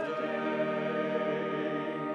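Choir singing church music, moving to a long held chord a moment in.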